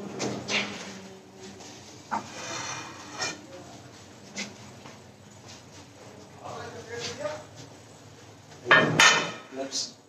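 Indistinct talking in the room, with scattered light knocks and clinks of dishes and utensils and a louder burst near the end.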